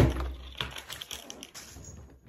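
A half-full plastic water bottle lands upright on a table with a sharp thud, followed by a second and a half of light clicking and rustling that fades out.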